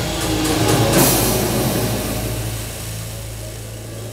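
Live instrumental band with drum kit and keyboards: a loud passage hits a cymbal crash about a second in, then rings out and fades.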